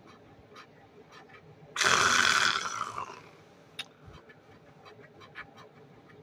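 A loud, frustrated exhaled sigh lasting about a second, starting a little under two seconds in, at a losing scratch-off lottery ticket. Short, light scratching strokes on the ticket come before and after it.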